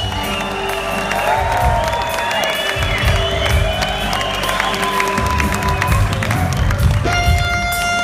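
Live band playing: an electric guitar plays lines whose notes slide up and down in pitch over bass and drums, settling on a long held note about seven seconds in. A crowd cheers underneath.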